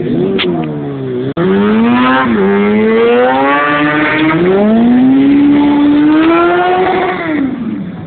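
Engine revving hard, its pitch climbing, dipping and climbing again over several seconds, then falling away near the end; a brief break in the sound just over a second in.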